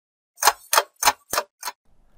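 Five sharp, evenly spaced ticks, about three a second, with the last one fainter: a ticking sound effect.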